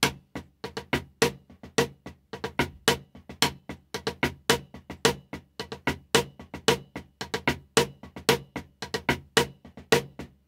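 Drumsticks playing drag-triplet rudiment permutations on a drum: a quick, unbroken run of strokes with diddles, and louder accents falling in a repeating pattern.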